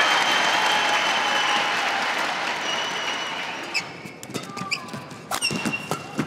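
Crowd noise in a large arena, fading away over the first three seconds or so. After that come sharp racket strikes on a badminton shuttlecock and short squeaks of players' shoes on the court as the rally goes on.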